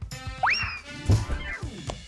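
Cartoon-style sound effect over background music: a quick rising whistle about half a second in that then eases slowly down, followed by a low thud about a second in.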